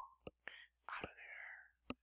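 A man whispering faintly about a second in, between a few small mouth clicks.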